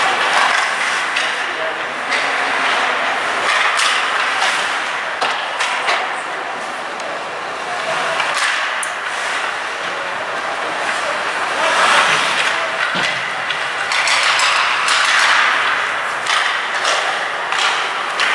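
Ice hockey game sounds: skates scraping and carving the ice in a steady hiss, with sharp clacks of sticks on the puck and the ice scattered throughout, and players' indistinct shouts.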